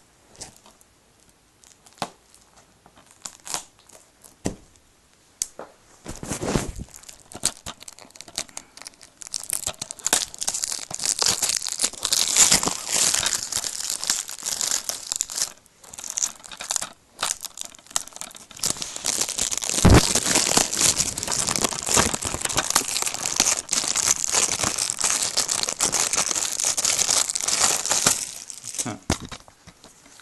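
Cellophane shrink-wrap being torn and crinkled off a DVD case. A few scattered clicks of handling come first, then a long stretch of dense crackling and tearing with one short pause and a sharp knock about two-thirds through.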